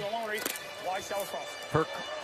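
Men's speech with music playing underneath; a commentator's voice starts near the end.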